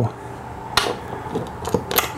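A few faint, short metal clicks and taps as a bolt with a large fender washer is handled and set into a hole in a workbench top, over a low steady background hiss.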